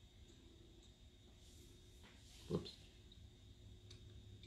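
Near silence: faint room tone, with one short, faint sound about two and a half seconds in.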